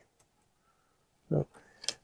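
Mostly quiet handwork, with a short vocal 'uh' a little past the middle and a couple of faint clicks near the end from a nylon zip tie being worked through corrugated plastic and PEX tubing.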